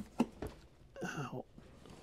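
A few faint short clicks in the first half-second, then a brief low mumbled voice about a second in.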